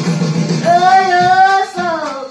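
A girl singing a pop song over instrumental accompaniment: the accompaniment plays alone for about half a second, then she comes in on a long held note that falls away near the end.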